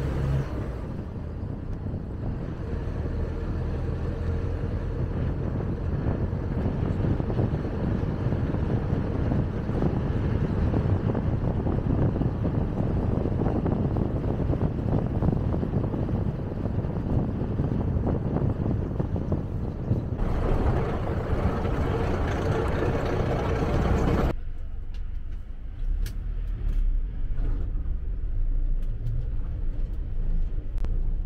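Road and engine noise of a vehicle driving, heard from inside: a steady rumble with tyre hiss. About three-quarters of the way through it cuts off abruptly to a quieter background with a low hum and a few small clicks.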